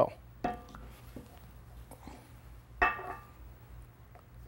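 Two metallic clinks, each with a brief ring, about half a second in and near three seconds in: a metal packing tool contacting the valve bonnet as die-formed packing rings are pressed down into the packing chamber.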